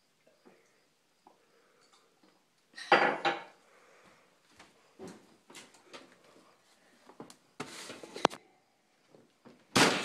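Kitchen clatter as an oven is opened and a box is handled on its metal wire rack: a loud clank about three seconds in, scattered knocks and clicks, a short scraping rattle a couple of seconds before the end, and another loud clatter right at the end.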